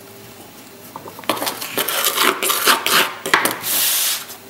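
Hands scraping and sweeping loose Delft clay across a workbench, with the metal casting frame knocking and sliding on the bench in quick, irregular scrapes and clinks that start about a second in.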